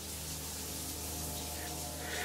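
A shower running, its spray giving a steady even hiss, with a low steady drone beneath it.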